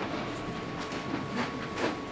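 People moving about the room between readers: scattered knocks and shuffling, with a sharper knock near the end, over a faint steady high-pitched tone.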